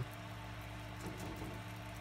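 A faint, steady low hum of a small motor, with no other sound.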